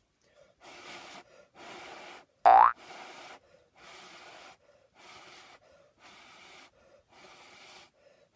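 Breath blown hard into a small microphone held against the mouth: a run of about seven short hissing puffs, each under a second, with brief gaps between them. About two and a half seconds in, a short, very loud rising squeal cuts across them.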